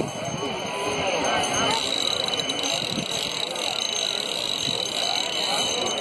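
Crowd of many people talking at once, a steady babble of overlapping voices with no single voice standing out.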